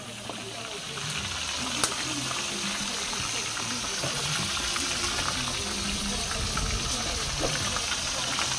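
Whole fish frying in oil in a steel wok over a wood fire: a steady sizzle with scattered sharp pops, the loudest about two seconds in.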